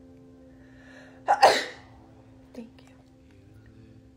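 A person sneezing once, loudly, in a sharp double burst.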